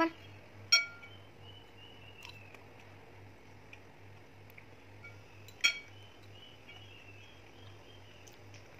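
Metal spoon and fork clinking against a ceramic plate while eating rice: two sharp clinks with a short ring, about a second in and again past the middle, with quiet scraping between.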